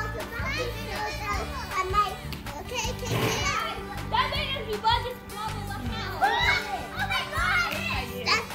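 Children's voices at play, shouting and squealing over each other without clear words, over background music.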